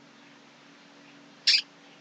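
Quiet room tone with a faint steady hum, broken about one and a half seconds in by a man's short, sharp breath.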